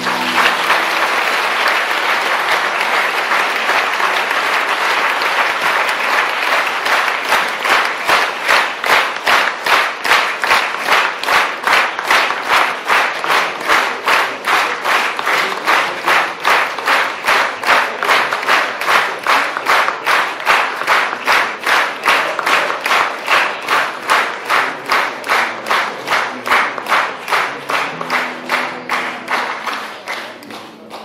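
Audience applause: a wash of clapping that, several seconds in, settles into steady rhythmic clapping in unison at about two claps a second, dying away at the end.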